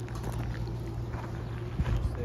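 A steady low machine hum, with scattered footsteps and knocks on pavement and a louder knock near the end.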